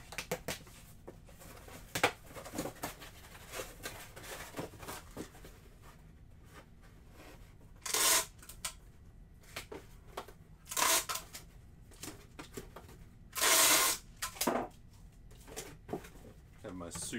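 Packing a cardboard shipping box: scattered taps, clicks and rustles of the box being handled, with four short, loud ripping bursts of packing tape being pulled and torn. The longest and loudest comes near the end.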